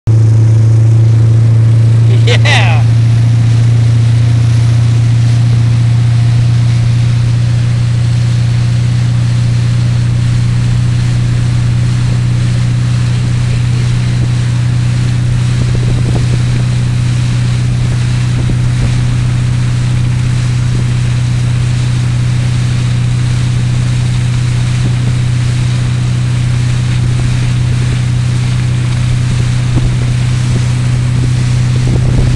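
Motorboat engine running steadily at towing speed, a loud constant drone, with water spray and wind rushing over the microphone. A brief high gliding sound, like a whistle or shout, cuts in about two seconds in.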